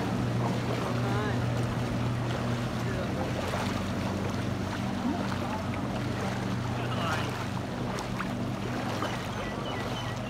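Floodwater rushing and sloshing around people wading through it, over a steady low motor hum. Faint distant voices come through now and then.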